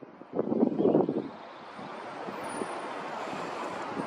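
Wind buffeting the microphone in gusts for about the first second. Then the steady running noise of a Nankai 1000 series electric train coming closer, building slowly.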